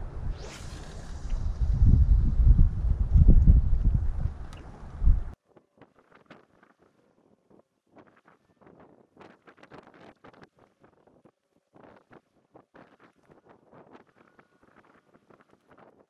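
Wind buffeting the microphone: a heavy low rumble for about five seconds, with a short rising hiss near the start. It cuts off suddenly to near silence with faint scattered ticks.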